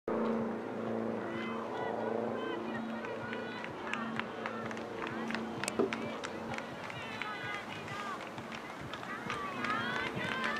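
Outdoor stadium ambience: faint distant voices carrying across the ground, with scattered light clicks.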